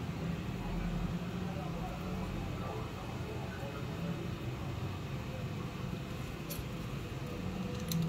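Steady low hum of room background, with a couple of brief light clicks of small plastic parts and screws being handled in the hands, late in the stretch.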